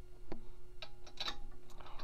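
A few light metallic clicks as bolts are handled at the pump's motor flange, over a faint steady hum.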